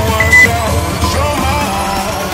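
Background workout music, with one short high-pitched interval-timer beep near the start. The beep marks the start of the next 30-second exercise interval.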